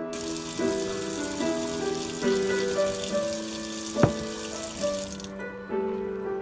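Kitchen tap running into a stainless steel sink to fill a pan with water, a steady hiss that starts right away and cuts off sharply about five seconds in. A single sharp knock sounds about four seconds in.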